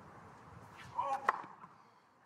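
A tennis ball struck by a racket: one sharp hit about a second in, just after a short voice sound.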